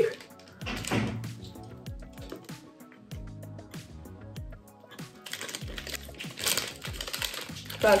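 Soft background music, with a plastic wrapper crinkling and rustling in the hands around a brownie as it is bitten and eaten.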